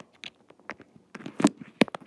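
Handling noise from a phone being gripped and moved: scattered taps and rubbing of fingers against the microphone, loudest a little over a second in, with a sharp click near the end.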